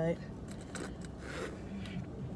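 A crossbody bag's chain strap and metal hardware being handled, giving a few faint metallic clicks and clinks with a soft rustle.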